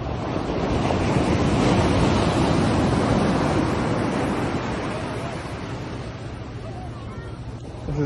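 Ocean surf: a wave breaking and washing up the sand, swelling over the first couple of seconds and then slowly dying away, with wind buffeting the microphone.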